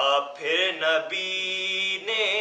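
A solo male voice chanting an Urdu salam, a devotional recitation, without accompaniment. It is sung in short melodic phrases with brief breaks and ends on a long held note.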